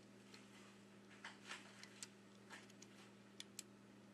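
Faint handling of a disassembled smartphone's parts as the motherboard is fitted into the frame: light scrapes and a few small sharp clicks, two of them in quick succession near the end, over a steady low hum.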